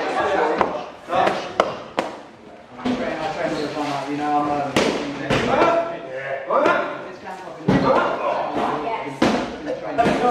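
Gloved punches landing on focus mitts: sharp slaps at an irregular pace, about one every second or two. Voices chatter throughout.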